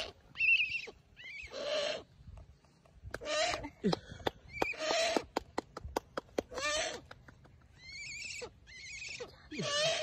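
A large horned owl perched on a falconry glove gives a series of short, hoarse hissing calls. A quick run of sharp clicks comes in the middle.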